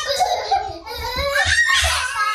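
Young children laughing and squealing in high, broken bursts during rough play, with a few dull thumps as they tumble onto the carpet.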